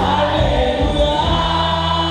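A woman singing a gospel song into a microphone, her voice holding and bending long notes, over instrumental accompaniment with steady low notes.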